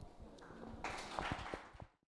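Faint, scattered audience applause starting about a second in and cut off just before the end.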